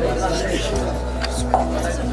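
A few sharp clicks and light clatter, over room chatter and faint background music with a steady hum.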